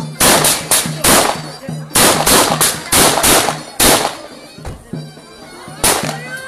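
About a dozen sharp, loud shots of celebratory gunfire in quick groups through the first four seconds, with one more near the end. Zurna music with davul drum plays underneath.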